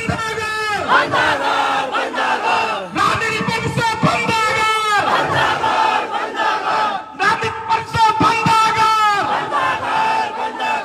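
A large crowd chanting political slogans in unison, loud short shouted phrases repeated one after another.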